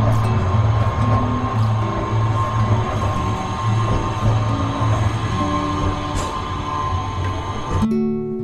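Acoustic guitar music over the running noise of a city tram passing close by on street rails, with a steady high tone. The street and tram sound cuts off suddenly near the end, leaving only the guitar.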